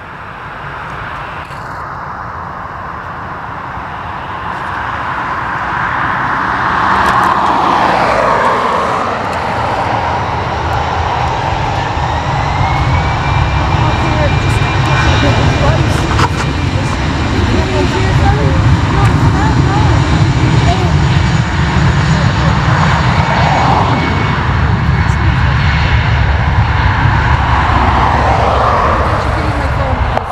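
Airbus A319-112's twin CFM56 turbofans spooling up to takeoff thrust. The sound builds over the first several seconds into a loud, steady roar with a deep rumble and a high fan whine that climbs in pitch, then holds as the aircraft rolls.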